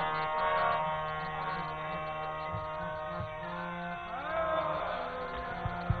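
Soft kirtan music: a drone of steady held notes from the accompaniment, with a brief gliding sung phrase about four seconds in.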